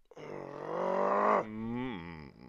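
A man's long drawn-out groan of strain as he tries to pull apart interlocked rings. It grows louder for over a second, then drops in pitch about one and a half seconds in and trails on as a lower, quieter groan.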